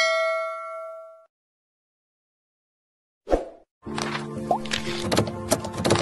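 A single bell-like chime rings out and fades away over about a second. After a short silence and a brief knock, background music starts about four seconds in.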